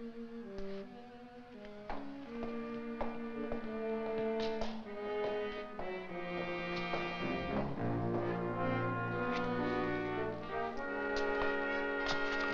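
Orchestral film score led by brass, playing a slow melody of held notes that swells over the first few seconds. Sustained low bass notes come in about two-thirds of the way through, filling out the sound.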